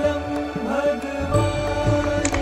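Background score: a chant-like voice sliding over held drone notes, with a deep bass coming in about halfway through.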